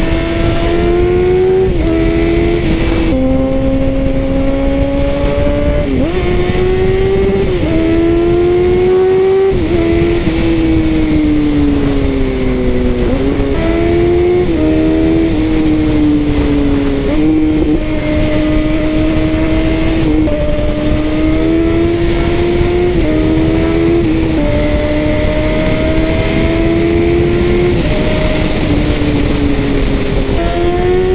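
Second-generation Yamaha FZ1's 998 cc inline-four running hard at speed. Its engine note climbs in pitch and drops back again and again, in small steps, as the throttle and revs change.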